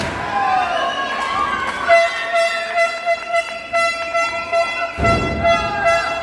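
Arena crowd shouting, then from about two seconds in a spectator's handheld horn sounds one long steady toot that flutters as it is blown. A low thump about five seconds in.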